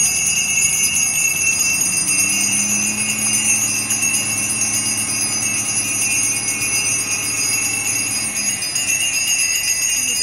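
Hand-held altar bells shaken in a continuous, rapid jingle, the ringing that marks the benediction with the Blessed Sacrament in the monstrance.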